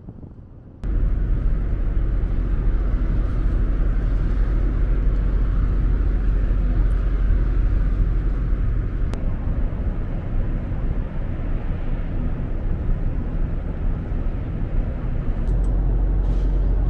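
Steady, loud low rumble of a large car ferry's engines and machinery, heard from the open deck while it berths. It starts abruptly about a second in.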